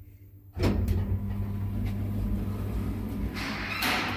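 Automatic sliding cabin doors of an Ayssa passenger lift opening on arrival: the door motor starts suddenly about half a second in with a steady hum, and a louder rattle ending in a knock comes near the end as the doors finish opening.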